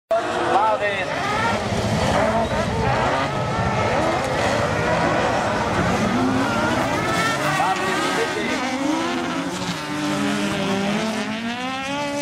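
Several autocross race cars racing on a dirt track, their engines revving up and down at once, with pitches rising and falling as they accelerate and shift.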